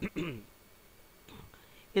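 A man's voice speaking a few words with falling pitch at the start, then a pause of faint room tone with a brief soft trace of voice, before speech resumes at the very end.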